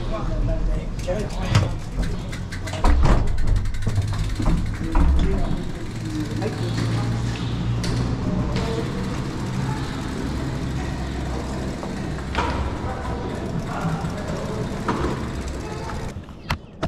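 Gondola station machinery running with a steady low hum, with clattering knocks as mountain bikes are lifted off the cabin racks and wheeled out, the knocks thickest in the first few seconds.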